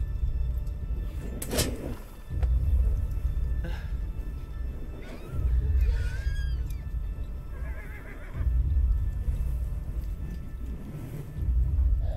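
Film score with a deep low pulse repeating about every three seconds, a sharp hit about a second and a half in, and horses whinnying around six and eight seconds.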